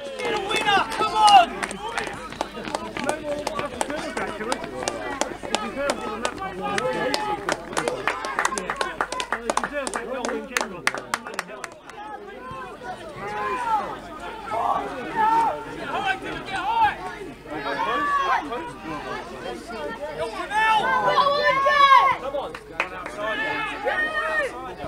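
Small crowd of spectators and players shouting and cheering without clear words after a goal, with a run of sharp claps through the first ten seconds or so and renewed shouts near the end.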